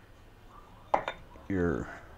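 Tile clinking against tile twice in quick succession about a second in, as tiles are set and spaced on a window sill.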